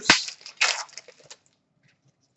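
Trading cards handled in the hands: a sharp click, then a few brief papery rustles that die away about one and a half seconds in.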